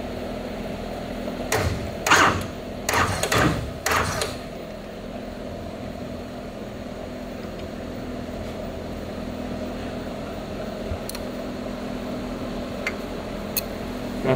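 A handful of sharp knocks and clicks from hand tools working on the engine's rocker arms, bunched in the first four seconds, over a steady low hum with a few faint ticks later.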